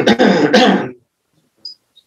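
A man clearing his throat, one rough rasp lasting about a second, followed by a couple of faint clicks.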